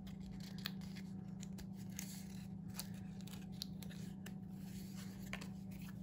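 Faint crinkles and small clicks of die-cut double-sided foam and cardstock being handled and pressed together by hand, over a steady low hum.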